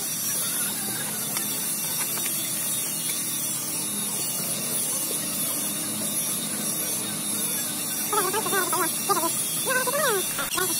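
Steady workshop hiss with a low hum, with faint scraping and patting of damp molding sand as it is struck off and pressed down on a steel casting flask. A person speaks in the last two seconds.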